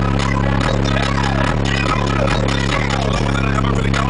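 Music played loud through a pair of JBL P1224 12-inch car subwoofers inside a hatchback, with a heavy deep bass that pulses with the beat. The subwoofers are driven by a new Lanzar amplifier at over 800 watts each.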